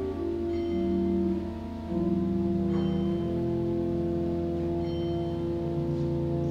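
Organ playing slow, sustained chords over a steady low bass note, the chords changing every second or few seconds.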